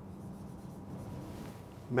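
Marker pen writing on a whiteboard, faint strokes over a low steady hum.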